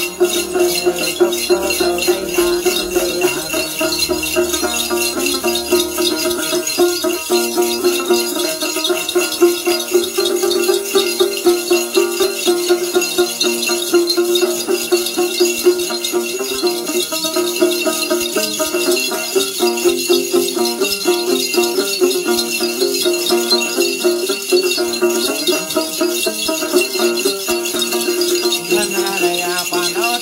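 Two Then ritual bell clusters (xóc nhạc), bunches of small metal bells on cords, shaken by hand in a steady jingling rhythm of about three shakes a second. A steady pitched tone sounds beneath them.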